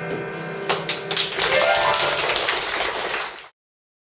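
The last notes on a Yamaha digital keyboard fade out. Then dense clapping from an audience starts about a second in and cuts off suddenly near the end.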